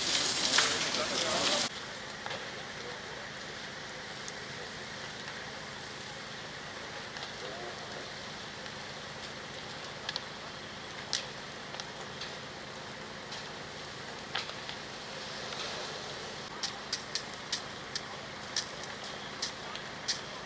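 Large building fire burning, a steady rushing noise broken by scattered sharp crackles and pops that come thick and fast near the end. In the first second and a half a louder rushing noise cuts off abruptly.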